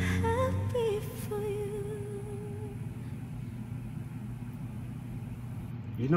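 The closing held note of a female singer's live ballad, sung with vibrato over a low sustained chord that stops less than a second in; the voice fades out a couple of seconds later, leaving low steady background noise.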